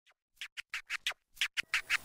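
A rapid run of about a dozen short scratchy strokes, an intro sound effect over the title card, starting about a third of a second in.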